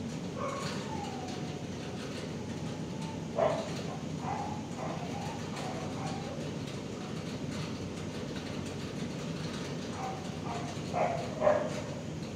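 Dogs in a shelter kennel barking and whining over a steady low hum: a short whine sliding down in pitch near the start, a bark about three and a half seconds in, and a couple more barks near the end. The dog in view is lying still, so the calls come from other kennels.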